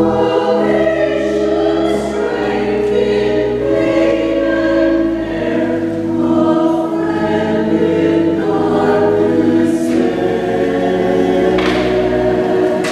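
A church choir of mixed voices singing in sustained chords, accompanied by organ with long-held low bass notes.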